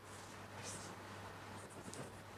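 Chalk writing on a blackboard: a few short, faint scratchy strokes, over a low steady hum.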